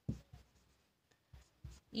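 Marker pen writing on a white board: a few short, faint scratching strokes as a word and an equals sign are written.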